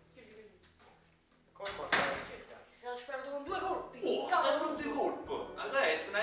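Men's voices speaking loudly and animatedly in a small room, starting about two seconds in after a quiet opening.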